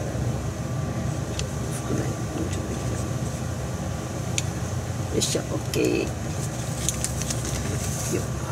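A steady low hum runs throughout, with scattered light clicks and a short murmur of voice about five to six seconds in.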